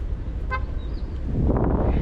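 A brief car horn toot about half a second in. Near the end comes a burst of handling noise as a hand brushes over the microphone.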